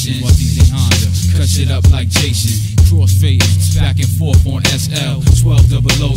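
Hip hop track: a rapper's verse over a heavy bass line and a drum beat.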